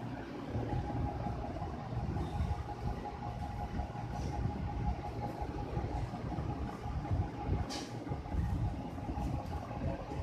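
Steady low rumbling room noise with a faint, thin, steady whine over it, and a single short click about three-quarters of the way through.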